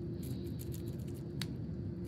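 Quiet, steady low room hum with a few faint soft clicks, and one sharper click about one and a half seconds in.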